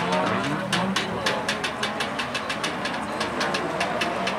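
Autocross race car engines running and revving out on the dirt circuit, with a rapid regular clicking of about five a second over them.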